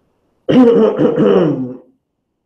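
A man clearing his throat into his fist: one loud, rasping burst lasting just over a second, starting about half a second in.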